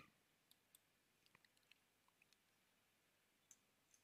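Near silence: faint room tone with a few very faint small clicks in the first couple of seconds.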